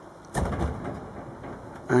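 Upright freezer door pulled open by its handle: one short, sudden sound about a third of a second in, fading within half a second.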